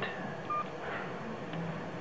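One short electronic key-press beep from a G15 touch phone, about half a second in, as its navigation ball is pressed to move through the menu.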